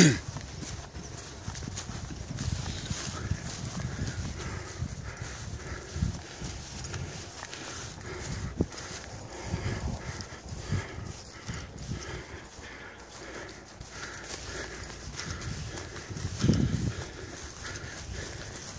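Wind buffeting the microphone, a steady low rumble, with a walker's footsteps through tall meadow grass heard as scattered soft thumps.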